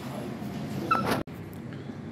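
Indistinct background room noise, with a short high-pitched whine about a second in, broken off abruptly by an edit cut.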